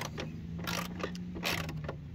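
Socket ratchet clicking in several sharp strokes as the mower deck's idler pulley bolt is tightened back up, with a steady low hum underneath.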